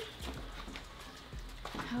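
Faint footsteps with a few light clicks as two people walk out through a door onto a patio; a girl's voice briefly near the end.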